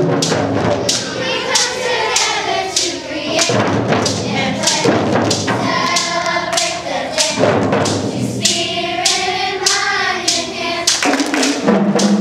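Children's choir singing over a steady beat of hand drums, about two strikes a second.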